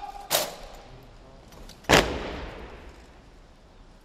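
Ceremonial artillery salute: two cannon shots about a second and a half apart, the second louder, each followed by a long rolling echo that dies away.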